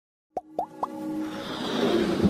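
Sound effects of an animated logo intro: three quick pops, each rising in pitch, about a quarter second apart, followed by a swelling whoosh over a held musical tone.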